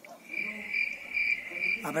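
A cricket singing one steady high trill that swells and fades a few times a second.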